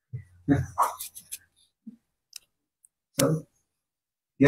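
A man's voice close to the microphone in a few brief, broken snatches, with some sharp clicks between them.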